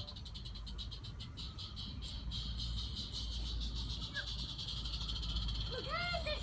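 Small gas-fired live steam garden-railway locomotive (Roundhouse 'Karen') running with a rapid, even exhaust chuff, about eight beats a second, over a low steady rumble.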